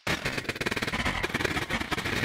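Electronic synthesizer music starting suddenly with a dense, rapid run of clicking, drum-like pulses over a steady high tone.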